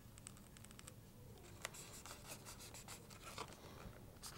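Faint scratching and light ticks of hands fitting the top half of a small model airplane's fuselage into place, with one sharper click about one and a half seconds in.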